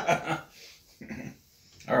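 Brief laughter trailing off, then a short, faint vocal sound about a second in.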